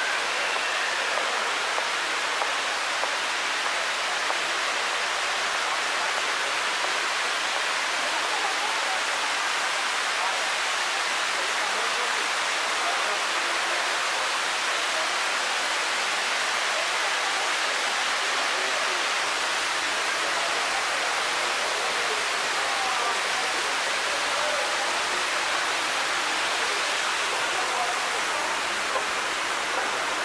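A tall indoor waterfall: a curtain of water pouring down a multi-storey wall, giving a steady, even rush.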